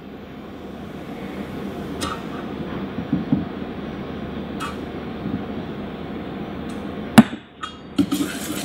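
A metal utensil knocking against a stainless steel mixing bowl as flour is spooned into a yeast dough and whisked in: a few light clinks, then one sharp metallic knock about seven seconds in, followed by a few small taps, over a low steady background hiss.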